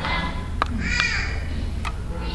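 A young child's high-pitched vocal cry about halfway through, rising then falling in pitch, with a few sharp taps around it.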